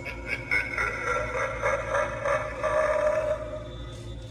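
Animatronic Halloween prop playing eerie electronic sound effects through its small speaker: a string of quick pulses over held tones.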